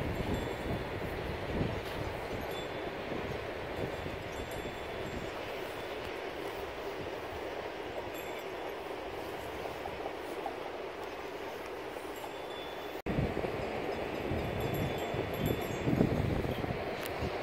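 Wind buffeting the microphone in an open field, a steady rushing noise with gusty low rumble, broken by a momentary dropout about 13 seconds in.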